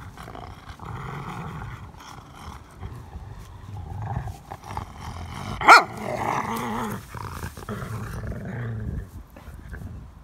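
Skye Terrier growling in long stretches while it tugs and drags a big branch, with the branch scraping and rustling through the dry leaves on the ground. One short, sharp, loud sound about halfway through stands out above the rest.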